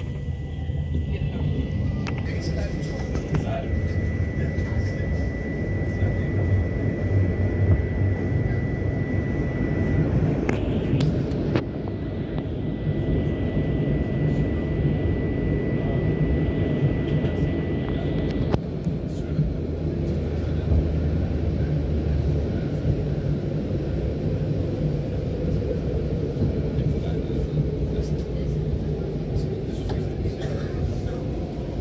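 Cabin of a moving fourth-generation S-train electric multiple unit: a steady running rumble from wheels and track. Over it is a thin, steady high whine that breaks off briefly about ten seconds in and stops for good a little after halfway.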